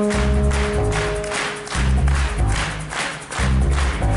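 Live rock band playing: electric guitars, bass and drums with a steady beat.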